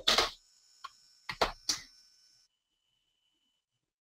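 A few short clicks and bursts of noise in the first two seconds, then dead silence as the live audio feed cuts out.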